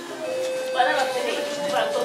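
A steady high tone that steps up slightly in pitch about a second in and holds, over people talking.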